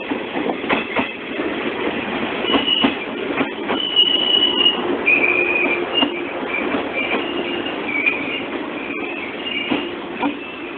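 An electric train's cars rolling past close by at a platform, the wheels knocking over the rail joints. From about two and a half seconds in, a high-pitched metallic squeal comes and goes.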